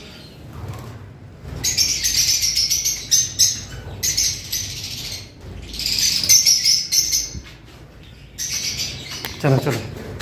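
A colony of lovebirds chirping shrilly in three bursts of a second or two each, many birds calling at once.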